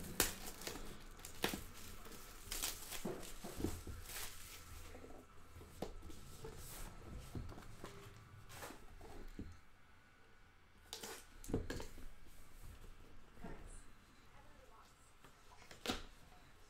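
Plastic shrink-wrap being torn off a trading-card box and crumpled, heard as scattered crackles and rustles, with the cardboard box handled near the end.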